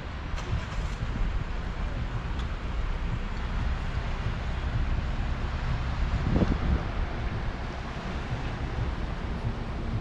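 Wind rumbling on the action camera's microphone over a steady wash of surf, with a brief louder swell of rumble about six seconds in.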